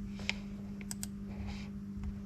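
A pad of lined writing paper being handled: a few light clicks and a soft rustle of paper. A steady low electrical hum runs underneath.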